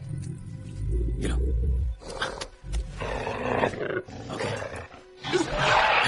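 Film velociraptor growling in short calls over a tense orchestral score, with a deep rumble in the first two seconds and the loudest call near the end.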